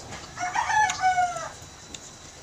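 One long bird call, a little over a second, starting about half a second in and dropping in pitch at the end.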